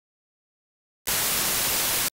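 Silence, then about a second in a loud burst of TV static hiss that starts abruptly and cuts off suddenly about a second later: a glitch-transition static sound effect.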